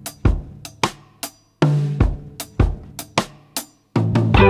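Rock drum kit playing an unaccompanied intro beat: a steady pattern of bass drum, snare and hi-hat hits, with a low sustained note joining about a second and a half in.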